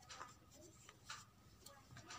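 A couple of faint, soft swishes of palms rubbing together, spreading hand sanitizer that has just been sprayed on.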